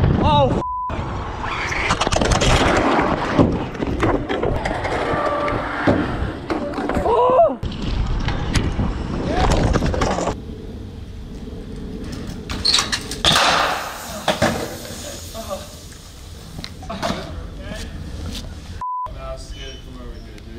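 Wind rush and BMX tyre noise on a GoPro's microphone as the bike rolls fast, with knocks and clatter, then voices talking. Two short censor bleeps cut in, one near the start and one near the end.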